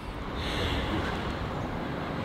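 Steady outdoor background noise: an even low rumble with a faint hiss above it, with no distinct events.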